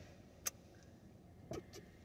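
Quiet car interior with a single sharp click about half a second in and a short, soft sound about a second and a half in, as a man sips from a lidded paper coffee cup.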